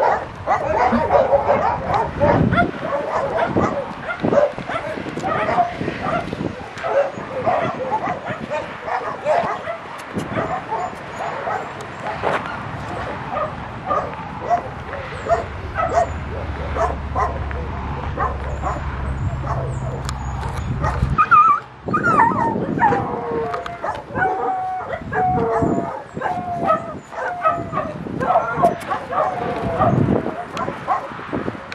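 Dogs barking, yipping and whining in a continuous stream of short calls.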